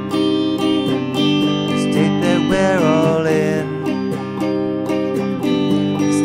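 Acoustic guitar strummed in a steady rhythm, with a couple of notes that slide in pitch around the middle.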